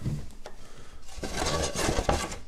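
A thin spruce guitar soundboard blank scraping and rubbing across a wooden workbench as it is slid and lifted. The dry scraping starts about a second in.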